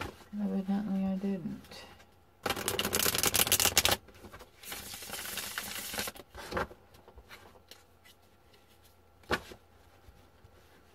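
A deck of tarot cards being riffle-shuffled by hand: a fast, loud flutter of cards about two and a half seconds in, a second, softer run around five seconds, and a sharp single tap near the end as the deck is squared.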